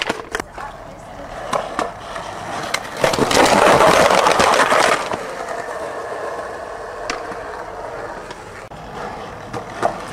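Skateboard wheels rolling over asphalt, loudest for about two seconds from three seconds in. A few sharp clacks of the board come in between.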